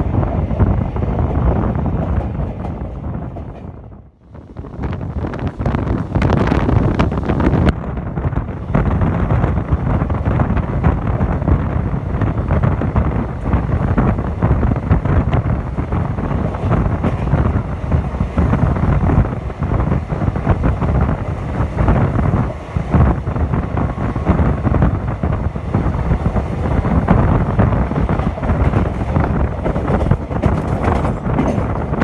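Indian Railways sleeper coach running at speed, heard at its open doorway: wheels clattering over the rails under heavy wind on the microphone. The sound dips out briefly about four seconds in and comes back.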